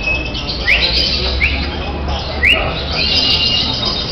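Caged lovebirds chirping: three short, sharply rising chirps about a second apart, then a longer held high note near the end. A steady low hum runs underneath.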